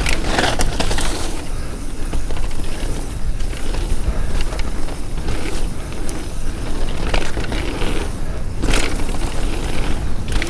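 Devinci Wilson downhill mountain bike rolling fast down a packed-dirt trail: steady tyre noise and wind rumble on the microphone, with occasional sharp knocks and rattles from the bike over bumps.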